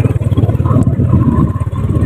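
Motorcycle engine running as it rides along, a steady low drone with fast even pulsing.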